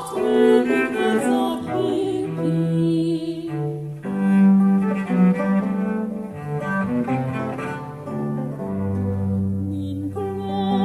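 Baroque chamber music: an instrumental passage on period bowed strings, with a cello sustaining a low line under a higher melodic line.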